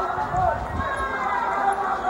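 A wrestling broadcast played through a television's speaker: a background of voices from the arena, with soft, irregular low thuds.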